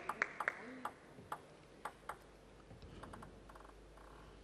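A table tennis ball bouncing: a few light, sharp clicks at uneven intervals in the first two seconds, then fainter ticks, over low arena murmur.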